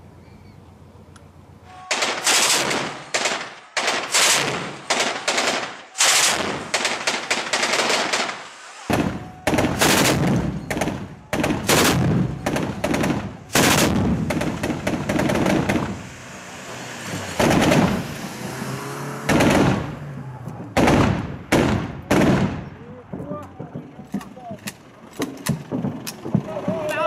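Machine gun firing at close range in repeated long and short bursts with brief pauses, starting about two seconds in and thinning out near the end.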